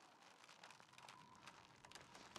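Near silence, with faint scattered clicks and crackles.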